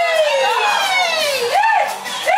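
A high-pitched voice holds one long note that slides slowly down in pitch, then gives short rising-and-falling calls about every three-quarters of a second.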